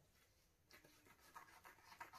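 Faint scratching and rustling of a paper towel being cut in half, starting under a second in as a run of small, quick scrapes.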